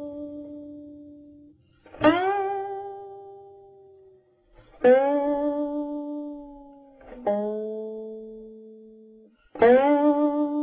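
Solo guqin (seven-string Chinese zither): four single plucked notes, spaced about two and a half seconds apart, each sliding up slightly into its pitch and ringing out slowly.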